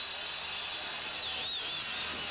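Steady stadium background noise under a thin, high whistling tone. The tone holds for about a second, then wavers up and down and fades.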